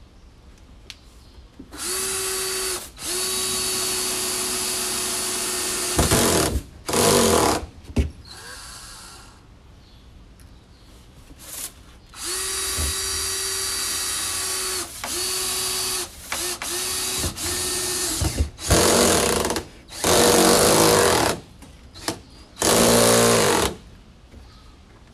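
Cordless drill driving screws into deck boards: the motor runs in repeated bursts of one to several seconds with short pauses between, as each screw is sunk. After a few seconds' pause in the middle comes a string of shorter runs.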